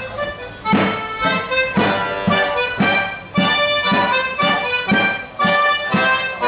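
Accordion playing a lively Morris dance tune, the opening of the dance. A steady beat about twice a second comes in under the melody about a second in.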